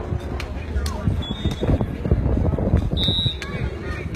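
Wind buffeting the microphone as a steady low rumble, with faint voices in the background and a few light knocks. A brief high, steady tone sounds about three seconds in.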